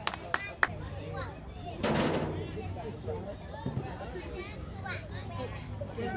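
Overlapping voices of players and onlookers talking and calling out, none of it clear, with three sharp claps in the first second and a brief rush of noise about two seconds in.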